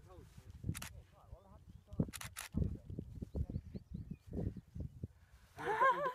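Rustling and low knocks as fingers work through dry grass, with a few sharp crackles about one and two seconds in. Quiet murmured voices, then a man starts speaking near the end.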